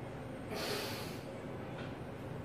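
A weightlifter breathing hard between reps of a heavy barbell back squat: a quiet, breathy hiss that swells slightly about half a second in.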